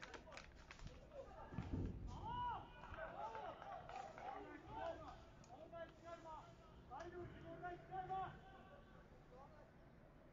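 Faint, distant shouts and calls of footballers on the pitch, several short overlapping voices carrying across a near-empty stadium.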